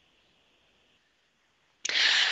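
Near silence, then near the end a sudden short in-breath into a headset microphone, a breathy rush of air just before speaking resumes.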